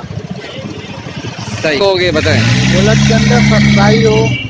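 Voices talking over street noise. From about halfway, a steady low vehicle engine hum, as of an engine idling close by, runs under the speech.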